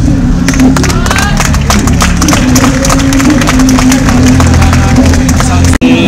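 Crowd clapping and cheering, with music playing over a sound system. The sound cuts out for an instant near the end.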